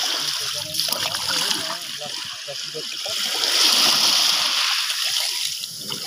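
Water splashing and trickling while a wet fishing net is handled to pick out the catch, with low voices talking.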